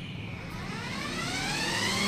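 The four 24-volt electric drive motors of a large children's ride-on buggy whining as it accelerates under remote control, the pitch climbing steadily from about a third of a second in.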